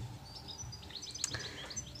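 Small birds chirping outside: a scatter of short, high chirps.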